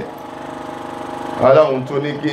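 A steady motor-like hum with a fast, even pulse fills a pause in the man's amplified voice. His voice comes back in about one and a half seconds in.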